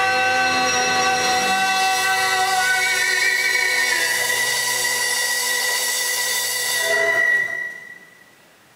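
A live rock band holding one chord: guitars, bass and keyboard ringing out together under a wash of cymbals, stopped sharply about seven seconds in, with one high note lingering for a moment.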